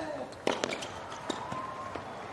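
Tennis rally on a hard court: sharp racket strikes on the ball and ball bounces, the loudest about half a second in, with a player's grunt on the opening shot.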